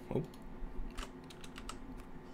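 Computer keyboard keys clicking in a quiet, irregular run of taps as a short name is typed.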